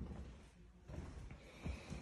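Faint, irregular low thumps and rumble of footsteps on the floor and handling of a handheld phone as it moves through a room.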